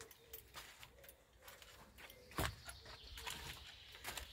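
Faint footsteps and small handling knocks of someone walking with a handheld camera, with one louder knock a little over two seconds in. A bird coos faintly in the background.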